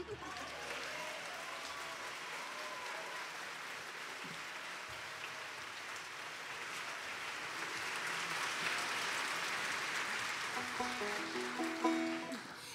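Audience applauding, the clapping growing louder in the second half, with a few voices near the end.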